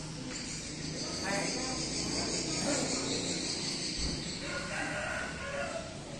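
A rooster crowing in the background over a steady high chirring of insects, with the faint clicks of carom billiard balls from a shot.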